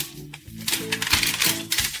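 Background music, with a few sharp plastic clicks and rattles as the parts of a plastic Transformers Bumblebee toy are moved and snapped into place by hand.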